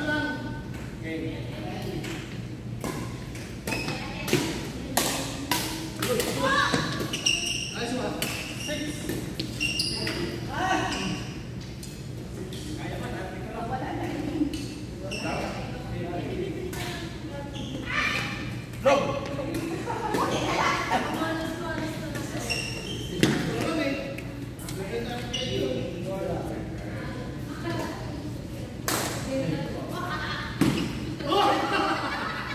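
Badminton rackets hitting a shuttlecock in a doubles rally: a string of sharp, irregular hits, echoing in a large hall. Players' voices and a steady low hum run under them.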